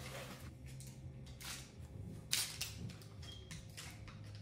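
Faint rustles and crinkles of gold-foil-wrapped chocolates being handled and pushed onto wooden skewers, a handful of short separate sounds, over a low steady hum.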